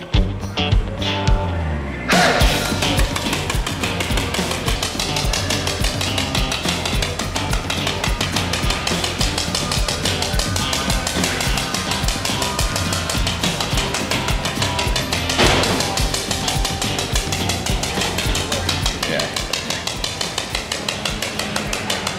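Background music with a steady beat, getting fuller about two seconds in.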